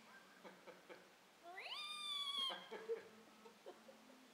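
A child's high-pitched squeal imitating a newborn piglet: one call of about a second that rises quickly and then holds.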